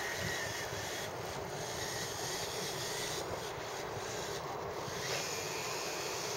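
The six small geared FC-140 electric motors of a cardboard RC model warship running steadily at speed, a constant even drone.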